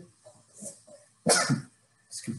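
A man coughing: a short double cough about a second and a quarter in, after a faint throat sound.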